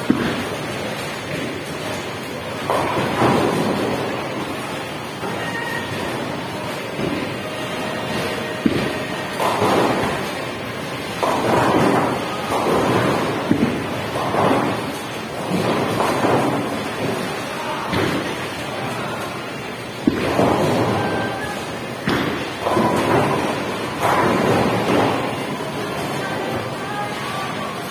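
Bowling alley din: bowling balls rumbling down the wooden lanes and pins crashing in repeated swells, with a few sharp knocks. Among them are two balls thrown two-handed, one at the start and one about fourteen seconds in.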